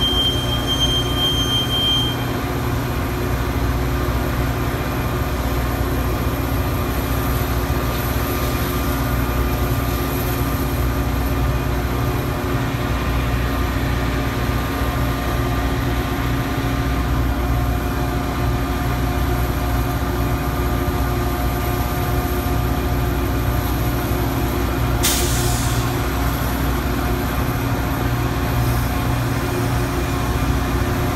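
Metra diesel locomotive and train standing at a station platform, the engine running with a steady low drone. A brief high squeal sounds in the first couple of seconds, and a short hiss of air comes about 25 seconds in.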